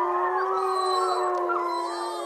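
Wolves howling together: several long, held howls at different pitches overlapping, with a few slight pitch bends.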